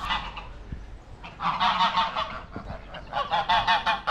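Poultry calling loudly in two bouts of rapid, repeated cries, each about a second long, the first about a second and a half in and the second near the end.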